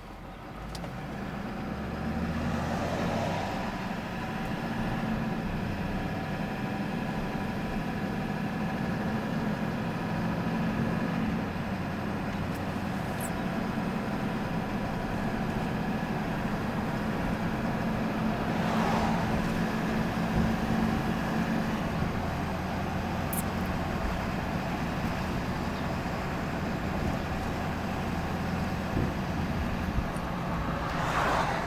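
A truck driving along a highway, heard from inside the cab: steady engine hum and road noise, which pick up about two seconds in, with two brief swells of rushing noise.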